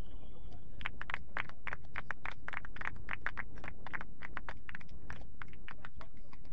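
A referee's whistle held as one steady tone, ending about a second in. Then irregular, quick clapping from several people runs on over a low steady rumble of wind on the microphone.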